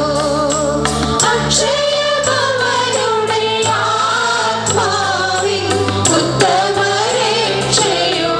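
A hymn sung by a choir over sustained bass notes, with occasional percussion hits.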